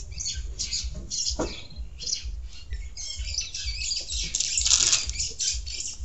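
Birds chirping in short, scattered calls, over a low steady rumble.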